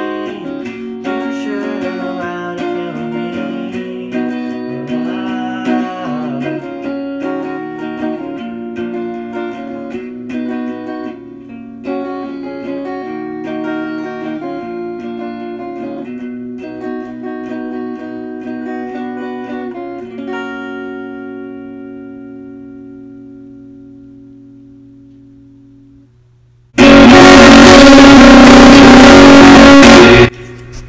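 Squier Affinity Stratocaster electric guitar through a Peavey Backstage amp playing the instrumental outro of the song, ending on a chord that rings out and fades for several seconds. Near the end a sudden, very loud, harsh burst cuts in for about three seconds.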